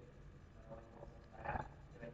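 A short, non-word sound from the lecturer's voice about one and a half seconds in, over low room noise.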